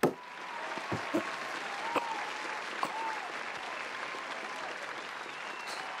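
Steady audience applause, a dense even clatter of clapping.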